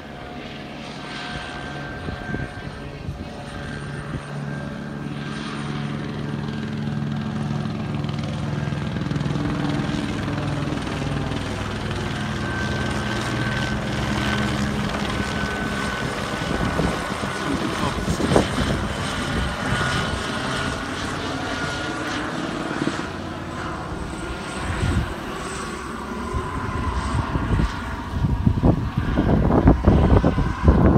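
Helicopter circling overhead: a steady, pulsing low drone of rotor and engine that grows slowly louder over the first several seconds.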